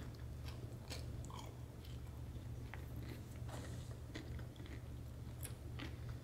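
A person biting into and chewing a pizza roll, with faint, scattered chewing clicks over a steady low hum.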